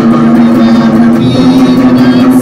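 Electric guitar strummed loudly, a steady low note droning under the chords.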